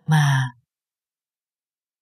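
A narrating voice speaks one short Thai word in the first half second, then complete silence.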